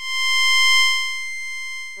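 Synthesized electronic tone from the DIN Is Noise software synthesizer: a single high, steady note with a ladder of overtones. It starts suddenly, swells for the first second, then eases off a little.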